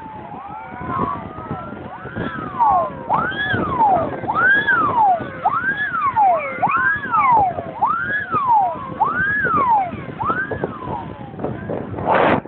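Several fire engine sirens sounding together in a convoy, overlapping wails that each rise and fall about once a second, over the vehicles' engine and road noise.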